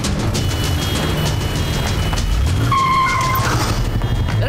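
Dramatic film background score with a driving beat, over vehicle engine and road noise, and a short held tone about three seconds in.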